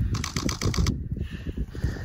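A camera shutter firing in a rapid burst, about ten clicks a second for under a second, over a low rumble.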